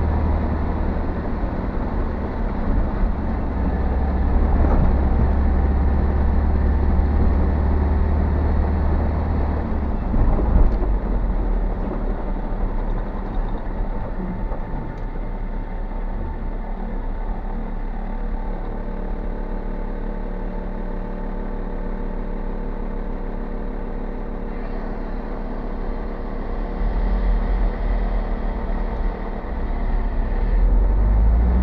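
Car driving over a rough, broken road surface, heard from inside the cabin: a steady engine and tyre rumble, deepest for the first ten seconds and again near the end, with a single knock about ten seconds in.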